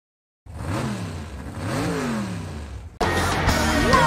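A car engine revved twice as a logo sound effect, each rev rising and falling in pitch. It cuts off abruptly about three seconds in, when loud concert music begins.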